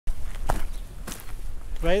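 Footsteps of a walker, two clear steps about half a second apart, over a low steady rumble of wind on the microphone. A man's voice starts near the end.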